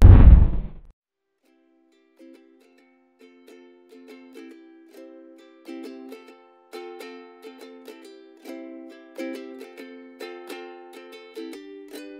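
Background music: a deep boom right at the start fades out within a second. After a brief quiet, a light plucked-string tune of short notes begins and gradually fills out.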